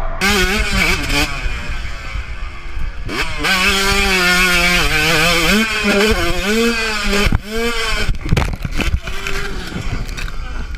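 Motocross bike engines heard from a helmet camera, the engine note rising and falling with the throttle and gear changes. Near the end the engine note breaks off and a few sharp knocks follow as the rider crashes.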